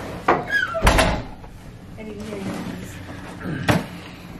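A door shutting with a loud thud about a second in, then a lighter knock near the end, with a few quiet words between.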